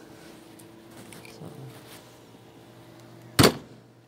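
A steady low hum under faint rustling handling noises, then a short spoken 'So' near the end.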